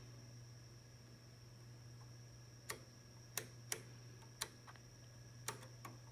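Six or so sharp, irregularly spaced clicks from a little before halfway on, as a detented control knob on the test bench is turned step by step to bring the signal into range. Underneath runs a steady low hum and a faint high whine from the test equipment.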